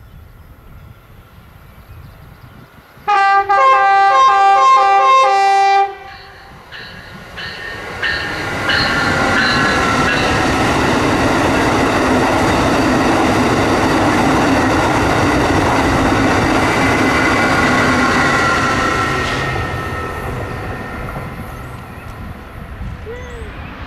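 Amtrak high-speed train sounding its multi-note horn about three seconds in, a chord lasting about three seconds with a few quick breaks. It then passes at speed: a loud, steady rushing of wheels and air with a high whine, fading away over the last few seconds.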